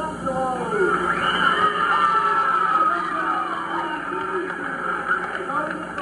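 Many voices of a packed gymnasium crowd talking and calling out at once, heard on an old radio broadcast recording.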